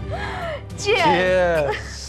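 Laughter: a short laugh, then a louder, longer one about a second in that falls in pitch.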